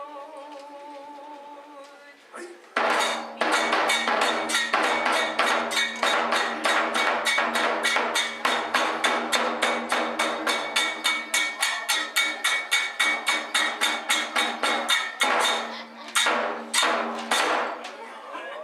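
Kagura accompaniment. A held note opens it; then from about three seconds in comes a fast, even beat of taiko drum and small hand cymbals, about five strokes a second. The beat breaks off briefly near the end, then a few more strokes follow.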